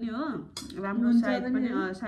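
A woman talking while a metal spoon clinks and scrapes against a bowl.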